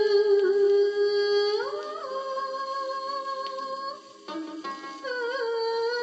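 A Hindi film song playing from a vinyl record on a turntable: a hummed vocal melody holds long, steady notes, steps up to a higher note about two seconds in, drops away briefly near four seconds, then returns as a wavering tune.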